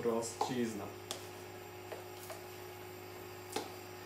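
A steady low hum with three faint, separate clicks of kitchen utensils, about a second apart. The clicks come from a utensil stirring a thick beet-and-millet mixture in a glass jar and a knife on a wooden cutting board.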